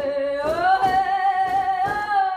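A blessing song with drumming: a singing voice rises to a long held note while hide drums, struck with padded beaters, sound a few strokes.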